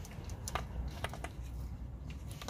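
Plastic dog treat puzzle toy clicking as a dog noses and pushes at its covers to get at the treats inside: four light, sharp clicks spread over two seconds, above a low rumble.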